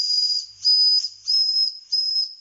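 Old brass steam whistle on a Wilesco D101 model steam engine's boiler, blown in four short high-pitched blasts with a hiss of steam around them. It whistles properly, unlike the engine's new plastic whistle, which only hisses.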